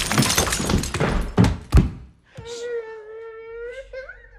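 Glass smashing over a person's head: a crash with shattering glass and scattering shards, and a final heavy thud a little under two seconds in. After a brief hush, a long, steady, wailing cry follows.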